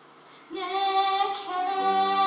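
A woman's solo singing voice comes in suddenly about half a second in, holding long steady notes over a hushed theatre; lower sustained notes join near the end as the musical number gets under way.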